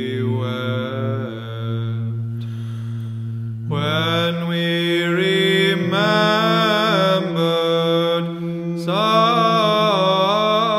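Orthodox church chant: a melody sung over a held low drone note. The melody falls away about two seconds in while the drone holds. A new phrase enters near four seconds, the drone moving up to a higher note.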